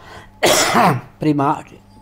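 A man coughing and clearing his throat: one hard, rasping cough about half a second in, followed by a shorter voiced throat-clearing sound.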